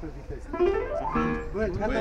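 Piano keys tried by hand, a short rising run of notes and then held notes ringing, played to check whether the piano has gone out of tune from being carried.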